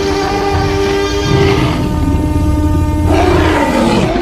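Train horn sounding a long held chord over a low rumble of a moving train, the horn cutting off about three seconds in, followed by a falling tone near the end.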